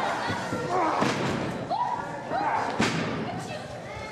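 Blows landing between pro wrestlers in the ring: two sharp smacks, about a second in and near three seconds, with short shouts from the audience between them.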